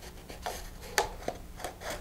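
A rolled paper transition cone rubbing and scraping as it is slid and pushed onto a cardboard centering ring and tube, with a few faint ticks.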